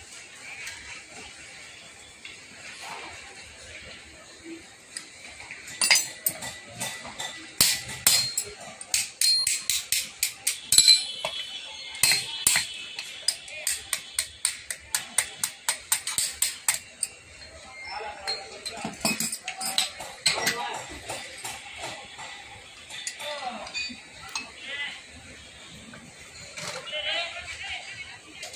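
Sharp metal clinks and taps at a steel casting mould for lead battery terminals, a long quick run of them, about three a second, from about six seconds in until two thirds of the way through.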